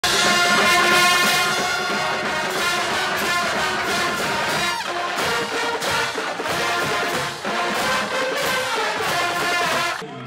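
Brass-led music played loud and full, cutting off abruptly at the end.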